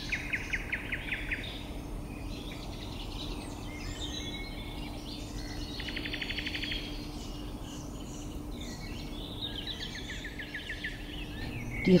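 Songbirds singing in woodland: a rapid high trill comes three times, at the start, in the middle and near the end, with scattered chirps in between. A steady low hum runs underneath.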